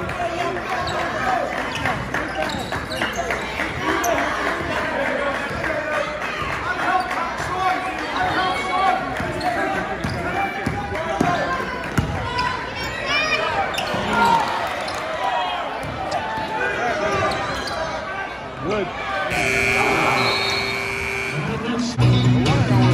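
A basketball being dribbled and bouncing on a hardwood gym floor during play, among spectators' voices and shouts that echo in the gym. Near the end a steady held tone sounds for about two seconds as play stops.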